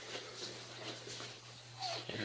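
Faint steady low electrical hum from the abandoned building's still-live power supply.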